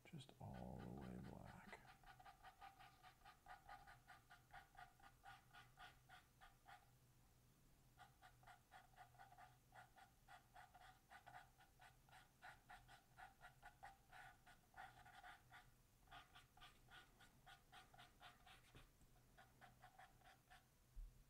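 Faint, rapid brush strokes of a paintbrush dabbing on a stretched canvas, about three or four a second with a slight ringing tone, pausing briefly about seven seconds in. A short low rumble comes in the first two seconds.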